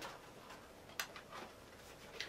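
Pages of a paperback picture book being turned by hand: a faint crisp paper snap about a second in, followed by a couple of lighter ticks of paper.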